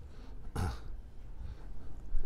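A single brief, low human voice sound about half a second in, falling in pitch, over quiet room tone with a steady low hum.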